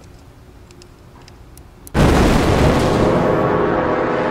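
A few faint clicks of a screwdriver tip working at a small electronics case, then just before halfway a sudden, loud explosion sound effect: a long rumbling blast with music under it.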